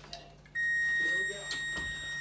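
A kitchen oven's electronic beep: one steady, high-pitched tone that starts about half a second in and holds for over two seconds. A couple of light clicks come near the end.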